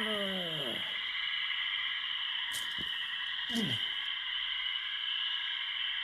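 A steady high-pitched whining drone holds throughout, a trailer sound effect. Over it a voice lets out a falling groan at the very start and a short falling sigh about three and a half seconds in.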